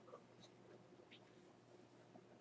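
Near silence: faint room tone with a low steady hum and two faint short ticks, one about half a second in and one about a second in.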